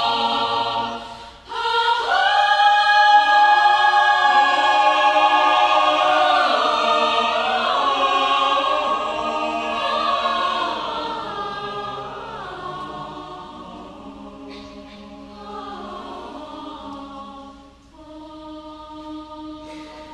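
Mixed choir singing an a cappella arrangement of a Banyuwangi folk song. A held chord breaks off briefly about a second in, then the choir comes back with a loud sustained chord and gliding inner voices. In the second half it fades to soft held chords.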